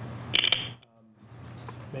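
A couple of sharp clicks and a short rustle of handling noise close to the podium microphones about half a second in. The sound then drops almost to silence for a moment before a low room hum returns.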